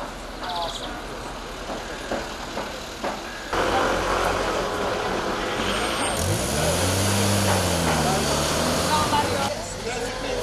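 Street traffic: road noise jumps up about three and a half seconds in, and about six seconds in a motor vehicle's engine note rises, wavers and levels off as it drives past, before the noise drops back near the end.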